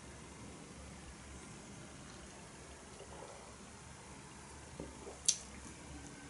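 Faint sipping from a beer glass over a quiet room with a low steady hum, and one short sharp click about five seconds in.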